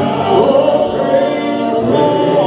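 Male gospel quartet of four voices singing a held chord in close harmony into microphones, with a brief sibilant consonant near the end.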